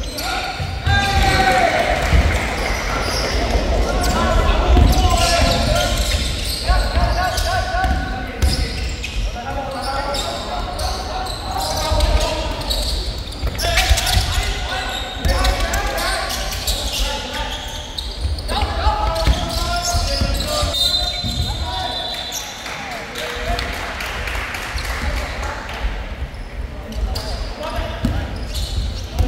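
A basketball bouncing on a hardwood court with thuds of footfalls during a game, under voices calling out, all echoing in a large sports hall.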